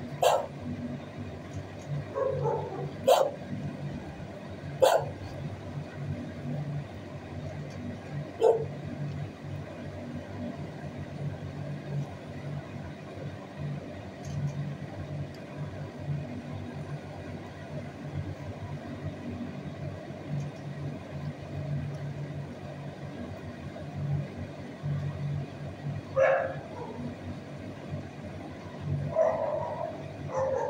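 Dogs barking now and then in a shelter kennel block: single sharp barks a few seconds apart in the first ten seconds, then a couple more near the end, over a steady low hum. The barking comes from other kennelled dogs, not the quiet dog in view.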